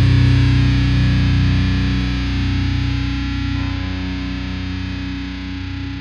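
Hardcore song ending on distorted electric guitar: held notes ring on and slowly fade.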